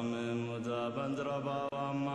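Background music of a slow chanted mantra, a voice holding long steady notes.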